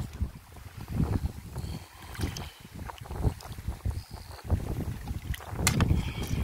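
Wind buffeting the microphone in an uneven low rumble, with wet river stones knocking together as they are turned over by hand; a few sharp clacks come near the end.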